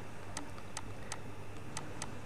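Faint light ticks, about two a second, over a low steady hum.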